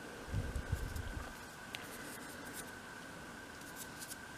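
Quiet handling of small miniature pieces on a craft cutting mat: a few soft low bumps in the first second, then faint room tone with a steady thin high whine and an occasional light tick.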